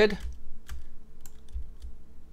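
A few faint, scattered computer keyboard keystrokes clicking.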